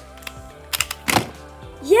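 Plastic Pyraminx puzzle clicking as its last pieces are turned, with one louder knock just after a second in as the solve ends.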